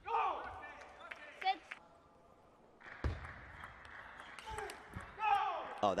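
A player's short shout at the end of a table tennis rally, then a few sharp ball taps and a steady hum of noise in the hall between points.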